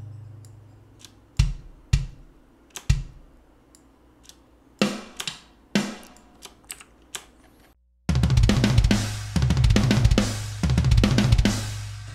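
Sampled MIDI drum kit: isolated single drum hits sound as kick notes are nudged one by one in the piano roll, then about eight seconds in a full rock/metal groove plays back with fast kick-drum strokes and cymbals, its notes hand-shifted slightly off the grid so it sounds less mechanical.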